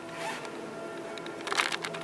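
Church bells ringing on, heard from inside the church as several steady, lingering tones. About one and a half seconds in, a short burst of rapid scratchy noise close to the microphone is the loudest sound.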